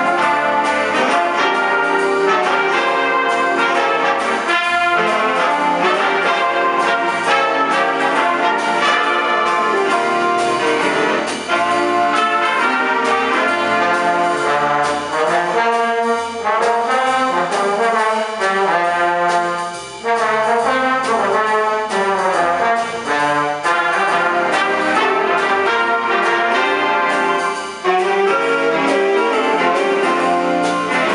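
A school jazz big band playing live, with trumpets, trombones and saxophones over a drum kit.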